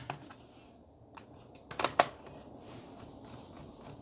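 Small plastic clicks and taps as a Sony Vaio laptop's bottom hard-drive bay cover is pressed back into place. The two sharpest clicks come close together about two seconds in.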